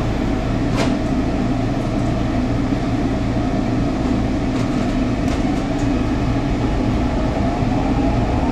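Inside a SEPTA Market-Frankford Line M-4 car standing at an elevated station: a steady hum from the car's equipment, with a single knock about a second in as the doors shut. Near the end a rising motor whine comes in as the train starts to pull away.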